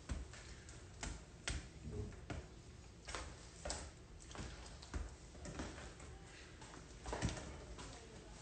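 Faint, irregular clicks and light taps, one every half second to a second, in a quiet small room.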